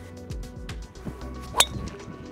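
Titleist TSR3 titanium driver striking a Pro V1x golf ball off the tee on a full swing: one sharp, loud metallic crack about a second and a half in, with a short ring after it, over background music.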